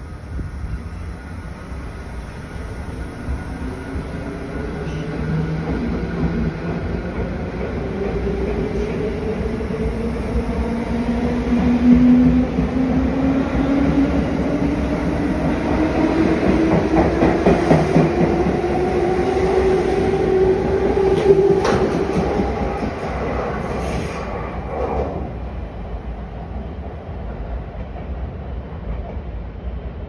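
JR West 221 series electric train pulling out and accelerating: a motor whine climbs steadily in pitch for about twenty seconds. Wheels click over rail joints as the cars pass, and the sound fades once the last car has gone.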